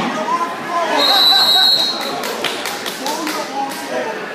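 A wrestling referee's whistle blows once, a steady shrill tone lasting about a second, about a second in, over spectators' shouting. A run of sharp taps follows.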